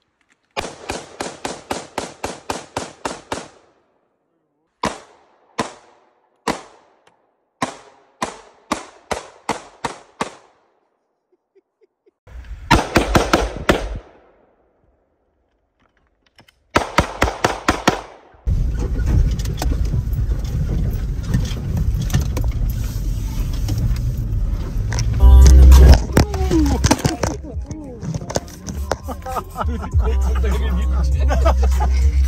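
Rifle fire at an outdoor range. It starts with a fast, even string of about a dozen shots, four to five a second, then single shots about half a second apart, then two dense rapid bursts. After that comes steady, bass-heavy road and engine noise from inside a moving car, with one loud thump.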